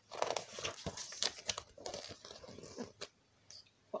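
A page of a picture book being turned by hand: paper rustling and crinkling with small knocks, stopping about three seconds in.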